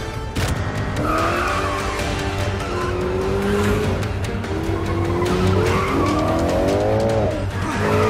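Several car engines revving hard at speed, their pitch climbing and falling, with tyre squeal, over a film score. The engine sound comes in suddenly about half a second in, and one rev drops off sharply near the end.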